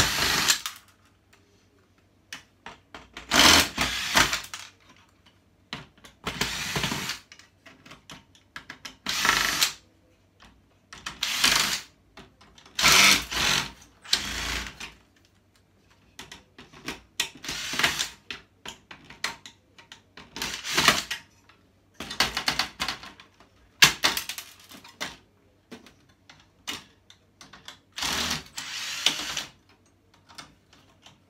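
Cordless drill-driver backing screws out of a flat-screen TV's sheet-metal chassis, running in short bursts of about a second, a dozen or so with pauses between.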